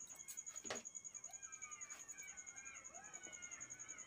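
Faint chirping calls gliding up and down in pitch, scattered through a quiet background with a steady faint high-pitched whine.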